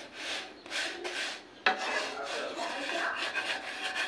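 Wooden spatula rubbing and pressing a roti against a dry metal karahi while it is reheated: a few short swishes, then a sharp knock about a second and a half in, followed by steady scraping.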